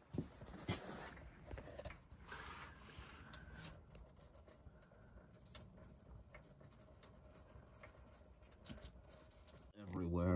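Near silence, with a few faint short rustles and light knocks in the first few seconds, then only low room noise.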